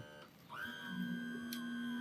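Electric power trim motor of a 2012 Mercury 90 hp four-stroke outboard running: a steady whine that starts about half a second in, rising slightly in pitch before settling. The trim is working normally.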